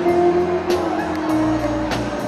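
Live band playing: held chords over a bass line, with sharp drum or cymbal hits about every 1.2 seconds.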